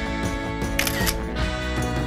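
Background music with guitar, with a short camera-shutter click about a second in.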